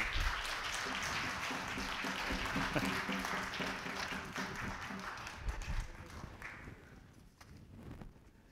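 Congregation applauding, the clapping fading away over the last couple of seconds, with a few voices faintly under it.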